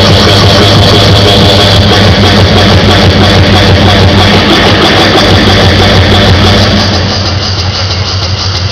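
Loud live electronic dance music built from looped, effects-processed beatboxing, played through a club PA and recorded distorted: a heavy, steady bass drone dominates. The treble drops away near the end.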